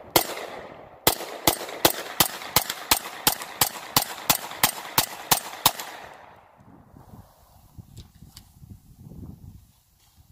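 Beretta 92S 9mm semi-automatic pistol firing: one shot at the start, then a steady string of about fourteen shots at roughly three a second, ending about six seconds in as the magazine runs empty and the slide locks back. Faint handling sounds follow.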